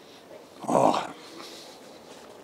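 A man's short, muffled moan of enjoyment through a mouthful of food, just under a second in and lasting about a third of a second.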